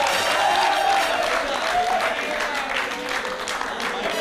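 Studio audience applauding, with music playing underneath.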